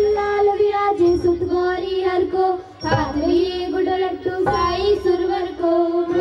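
Indian song: a high female voice sings a melody over instrumental backing, with a brief break in the sound a little under three seconds in.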